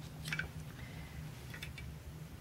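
Faint small clicks from handling fly-tying tools at the vise, a few light ticks about a third of a second in and again near the end, over a low steady hum.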